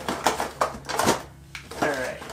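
Small cardboard and plastic toy packaging being handled and opened: a handful of short crinkles and clicks.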